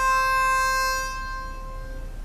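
Background music: a single held melodic note, fading away after about a second.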